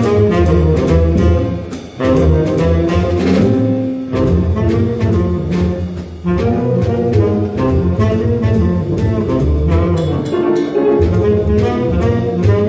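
A live jazz group playing: a saxophone takes the lead over an upright double bass and a drum kit keeping time on the cymbals. The sax line breaks off briefly twice, about two and six seconds in.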